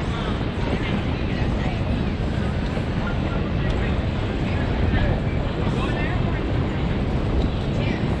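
Steady low wind rumble on an outdoor microphone, with faint distant voices throughout.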